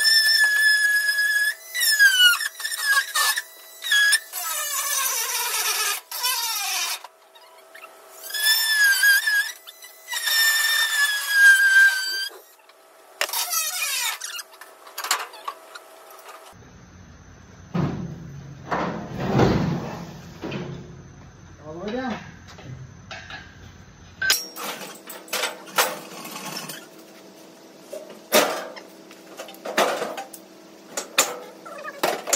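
A power tool cutting steel angle iron: a loud, squealing whine that bends up and down in pitch. It comes in two long runs over the first twelve seconds or so, then in a few short bursts. Later come scattered knocks and clanks.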